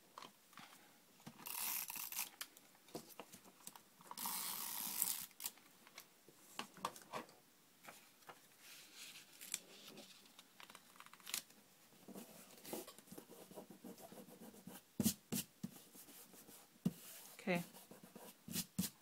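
Hands assembling a paper envelope: two scratchy stretches about a second long, one near the start and one about four seconds in, as adhesive is put on the paper tab, then light paper rustling and small taps as the folded paper is pressed together, with a few sharper knocks near the end.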